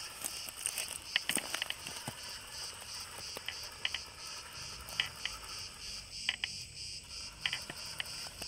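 Insects chirping: a high, even pulsing of about four to five pulses a second that never changes, with scattered light clicks and taps over it.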